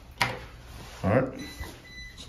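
A single sharp click as the toggle of a 120-volt 15-amp light switch is flipped, followed about a second later by a short murmur from a man's voice.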